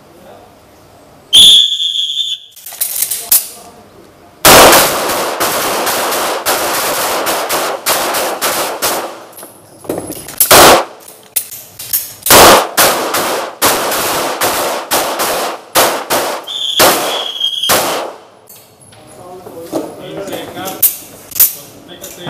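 A high signal tone starts a timed 15-second rapid-fire string, and several 9 mm pistols on the firing line fire many quick, overlapping shots. A second high tone sounds about 15 seconds after the first, near the end of the string, and the last shots trail off.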